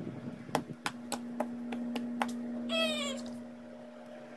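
Blue glitter slime being stretched and lifted, giving sharp little clicks and pops over the first two seconds, over a steady low hum. About three seconds in, a short cat meow, falling in pitch.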